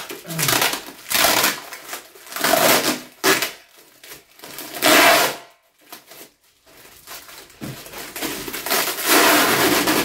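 Thick vacuum-sealed plastic packaging being pulled and wrenched open by hand: repeated loud bursts of crinkling and rustling plastic, with two quieter pauses.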